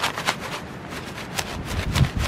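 Loose seeds rattling inside a cardboard wildflower seed shaker box as it is shaken hard, a rapid run of sharp rattles that grows sparser, with a low rumble near the end.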